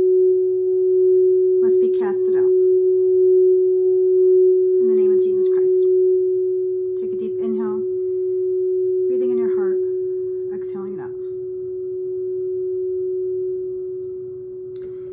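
A steady, unbroken meditation tone at one pitch, held without fading and slowly wavering in loudness.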